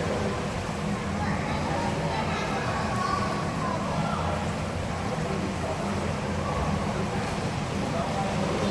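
Indistinct voices of adults and children in an indoor swimming pool hall, over a steady low hum.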